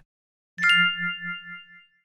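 A single bell-like electronic ding that sounds about half a second in and rings on with several high tones, over a low tone that pulses about four times a second as it fades. It is a section-cue chime on a test-prep audio recording, marking the start of a new unit.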